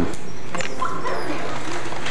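Small dog giving a few short, high barks and yips about a second in.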